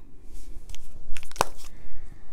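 Cardboard eyeshadow palettes being handled and set down on a hard countertop: rustling with a few short clicks and knocks, the sharpest about one and a half seconds in.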